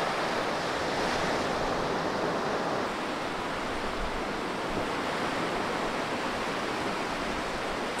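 Small waves breaking and washing in over a sandy beach: a steady rush of surf.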